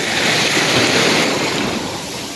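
Small sea waves washing up on a sandy beach: a rushing hiss that swells in, peaks about a second in, then fades.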